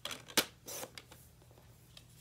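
Sliding paper trimmer cutting a sheet of patterned paper: a short scrape of the cutting head, a sharp click a little under half a second in, and a second scrape just after. Softer paper rustles follow as the cut sheet is handled.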